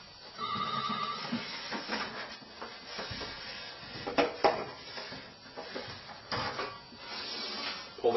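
Sump pit cover being worked loose and lifted off by hand: irregular scraping and handling noise with a few knocks. There is a brief steady high tone near the start.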